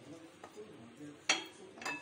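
Two sharp clinks of a hand and fingers knocking against a glass bowl while scooping up soft coconut laddu mixture, the second with a brief glassy ring.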